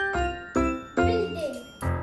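Upbeat background music: bright, chiming, bell-like notes over a recurring low bass beat.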